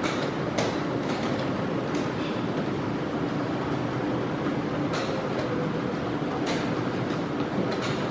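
Sharp clicks a handful of times at irregular intervals as wooden chess pieces are set down and the chess clock is pressed in a blitz game, over a steady rumbling background noise.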